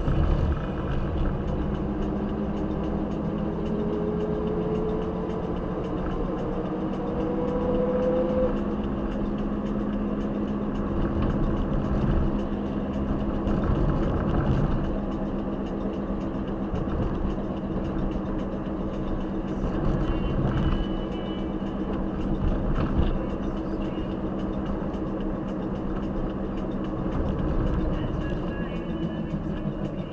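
Car engine and road noise heard from inside the cabin while driving in town, a steady low hum. A tone rises in pitch from about four to eight seconds in as the car speeds up.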